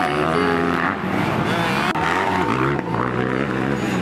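Motocross dirt bike engines running, their pitch holding steady, then stepping up and down as the throttle changes.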